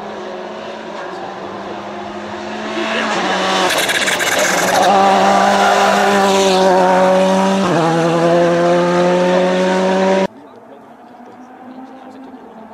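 Rally car engine at full stage pace, growing louder as it approaches. About three and a half seconds in the note breaks with a noisy rasp as it brakes for the hairpin, then it accelerates out, the pitch climbing with one gear change about two thirds through. It cuts off suddenly near the end.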